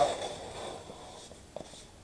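Faint rustle of blue painter's tape being unrolled and handled against an aircraft cowling, fading after about a second, with a light tick near the end.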